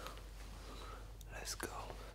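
Faint whispering by a man, over a low steady hum.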